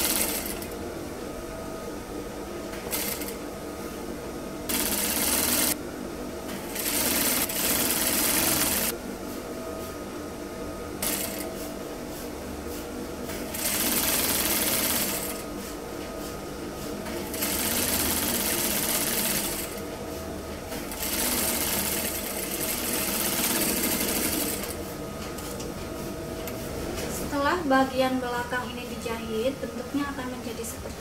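Straight-stitch sewing machine stitching a long seam in runs of one to a few seconds, stopping and starting again about eight times as the fabric is guided through, with a steady hum in the pauses between runs.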